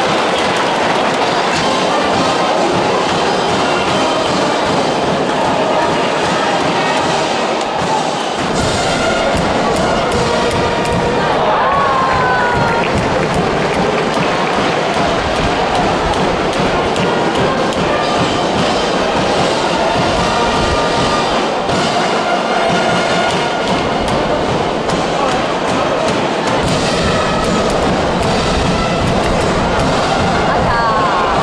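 Loud, steady stadium crowd noise at a high-school baseball game: the cheering section's music and voices from the stands.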